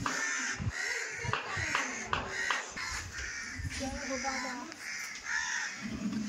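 Crows cawing, a quick run of harsh caws in the first few seconds and another near the end, with people's voices faintly in the background.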